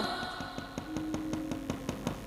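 The dalang's wooden cempala knocking on the puppet chest (dhodhogan) in a steady soft beat of about four knocks a second, over faint held gamelan tones.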